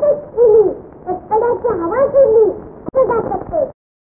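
A child's high-pitched voice talking in short, whiny, sing-song phrases, with a single sharp click shortly before it cuts off suddenly near the end.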